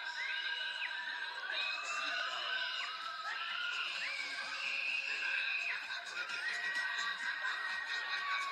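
Several riders screaming in long, held screams, voices overlapping at different pitches.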